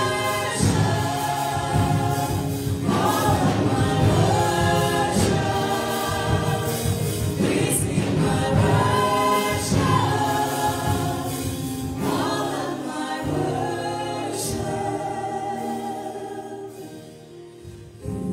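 A group of women singing a gospel praise-and-worship song in harmony, with keyboard accompaniment. The singing gets softer near the end.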